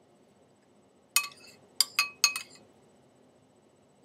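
A spoon clinking four times against a hard dish, sharp taps that each ring briefly. They come in a quick cluster starting about a second in.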